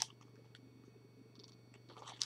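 Quiet room tone: a steady low hum under a faint low rumble, with one brief hiss right at the start.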